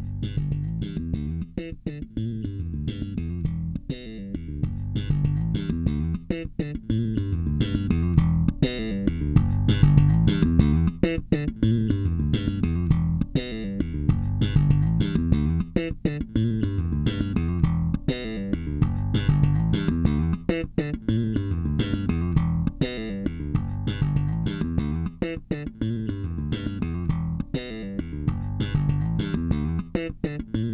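Electric bass guitar playing a continuous groove of sharply attacked notes through an engaged MXR Dyna Comp Bass compressor pedal, with its output and tone knobs being turned as it plays.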